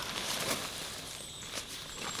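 Tent fabric rustling and scraping as it is unfolded and spread out by hand on wood-chip ground, with a few short scuffs.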